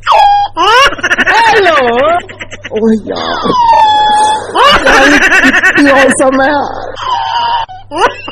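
A voice making loud, wordless, drawn-out wailing cries, several in a row, each sweeping and wobbling up and down in pitch.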